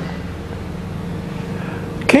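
Steady low rumbling hum of background room noise, with a faint constant tone above it and no sudden events.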